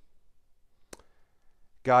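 Near silence during a pause, broken by a single short click about a second in; a man's voice starts speaking just before the end.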